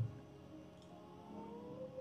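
A pause between a man's spoken phrases: his voice trails off at the start, then near quiet with a faint thin tone rising slightly in pitch in the second half, before speech resumes at the very end.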